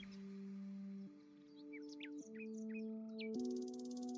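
Soft background music of held chords that change about once a second, with short high bird-like chirps over it and a fast high buzzing trill near the end.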